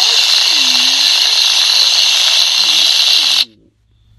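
Spray sound effect of an animated Reddi-wip aerosol whipped-cream can: a loud, steady hiss that cuts off suddenly about three and a half seconds in.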